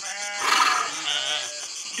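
Sheep bleating once: a single long call lasting about a second and a half.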